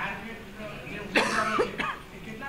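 A person coughs twice: a sharp burst just over a second in, then a shorter one just after.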